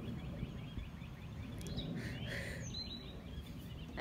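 Outdoor ambience with a bird calling: a run of short high chirps, about four a second, that fades out after a second or so, then a few different rising and falling calls about two seconds in, all over a low background rumble.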